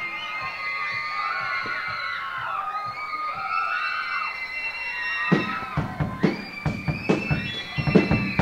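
Live rock band: sustained, slowly bending high notes ring out, then a drum kit comes in about five seconds in with a steady beat, starting the next song.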